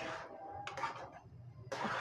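A spoon stirring thick spinach purée in an aluminium pan: soft, wet scraping strokes near the start and again near the end, with a couple of light clicks in between.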